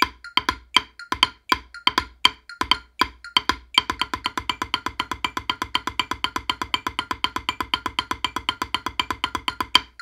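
Wooden drumsticks playing even strokes on a rubber practice pad in 6/8 jig time. About four seconds in, the strokes come twice as fast as the drummer moves to the next, finer subdivision; they stop just before the end.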